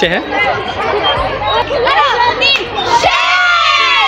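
A group of schoolchildren shouting and cheering together, many voices overlapping, swelling about three seconds in into one long shout in unison.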